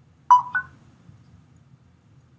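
Two short electronic beeps in quick succession, the second slightly higher in pitch.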